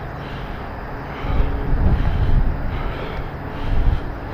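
Wind buffeting the camera microphone on an exposed ridge, a low rumble that swells in gusts about a second in and again near the end.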